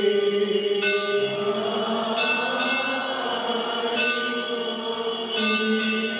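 Liturgical chanting held on a steady drone, with a bell ringing out about every one and a half seconds.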